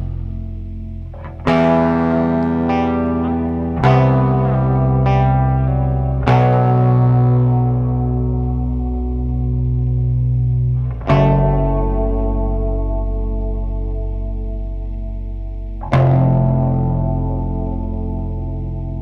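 Background music: slow guitar chords, five struck in turn a few seconds apart, each left to ring out and fade.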